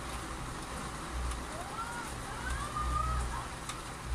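Quiet background noise: a low, uneven rumble and hiss, with a few faint gliding tones about halfway through.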